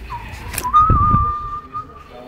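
A single whistled note, wavering at first and then held steady for over a second, with a click and low handling bumps under it about a second in.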